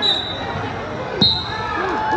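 Wrestling bout on a gym mat: a single sharp thump on the mat about a second in. A high, steady squeal is heard at the start and again just after the thump, over crowd chatter in the gym.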